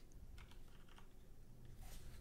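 A few faint clicks from working a computer's mouse or keys, over a faint low hum.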